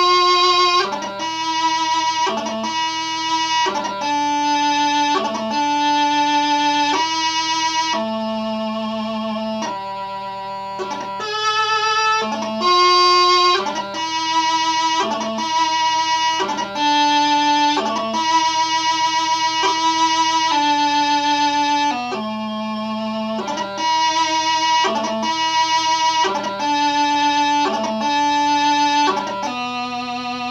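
Highland bagpipe practice chanter playing a piobaireachd variation: a single reedy melody line of held notes, each cut by quick grace-note flourishes.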